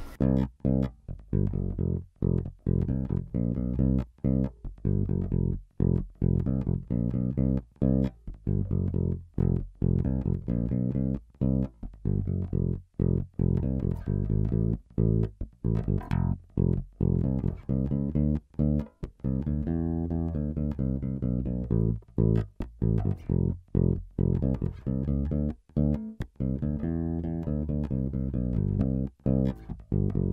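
Warwick Rock Bass Corvette electric bass played solo on its neck pickup alone, with treble and bass controls at half and volume full up. It plays a groove of short, clipped notes with brief silences between them.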